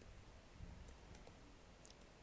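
Faint computer keyboard keystrokes: a few scattered clicks as code is typed.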